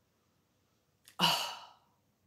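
A woman's short, breathy sigh about a second in, fading away: an appreciative exhale after smelling a scented wax melt.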